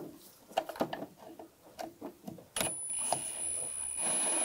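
A few light clicks and taps as the socket is fitted onto a worm-drive hose clamp, then, about two and a half seconds in, a cordless electric ratchet starts running with a steady high whine, loosening the clamp.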